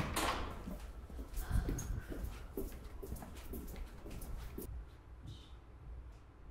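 A sudden burst of noise right at the start, then soft, irregular knocks and rustles in a small room, spaced unevenly over several seconds.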